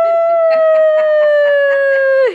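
A person's long, high-pitched playful howl, a mock tiger roar, held as one unbroken note that slowly sags in pitch.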